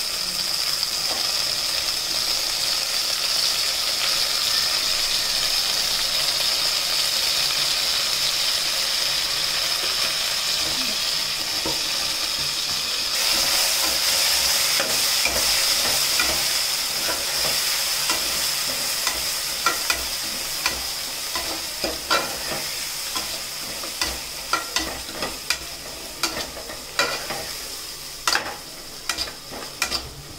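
Onions and minced mutton sizzling steadily in hot oil in a pressure cooker pot, the sizzle getting louder a little under halfway through. In the last third a spatula scrapes and knocks against the pot more and more often as the mix is stirred, while the sizzle slowly fades.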